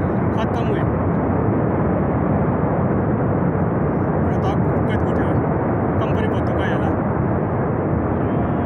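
Continuous, even roar of a glacial flood surge and debris rushing down a mountain gorge, raising dust, with faint voices behind it.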